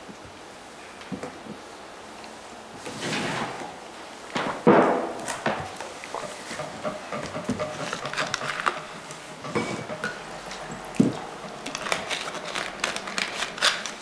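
Scattered knocks, clicks and rustling handling noises in a room, the loudest a sharp knock about five seconds in, with a flurry of small clicks near the end.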